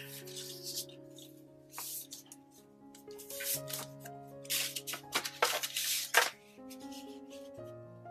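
Soft background music of sustained notes, with paper rustling as a card is handled and slid against a folded paper envelope: several brief rustles between about three and six seconds in, the loudest near the end of that stretch.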